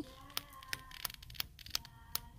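Pages of a small patterned paper pad being flipped one by one under a thumb, each page flicking free with a soft snap, about three a second.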